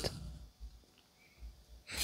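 Mostly quiet. Just before the end, a straight razor begins a scraping stroke across an Atoma 600 diamond plate, a Sharpie-marked blade being drawn over the stone to check that it is flat.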